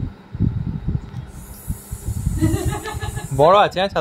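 An umbrella's fabric canopy rustling with a brief hiss as it is handled and lifted overhead, over low handling bumps. Near the end a woman exclaims 'wow' several times.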